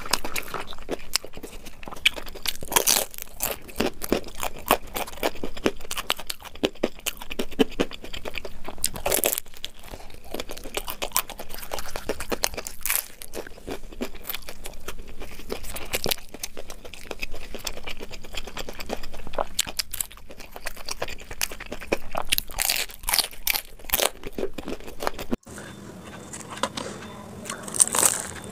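Crispy deep-fried samosas being bitten and chewed close to the microphone: a dense run of crackly crunches, played back at double speed. Near the end the sound drops quieter.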